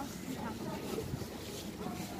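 Pedestrian street ambience: voices of passers-by in the background, with wind on the microphone and a low outdoor rumble.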